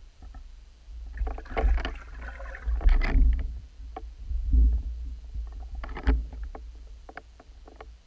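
Underwater sound picked up by a submerged camera: a low water rumble with clusters of knocks and scrapes, loudest between about one and three and a half seconds in and again about six seconds in.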